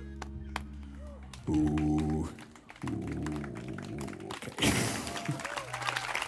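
The last notes of a small acoustic band's song ring out, voice and guitar holding a final chord, and then an audience breaks into applause about four and a half seconds in.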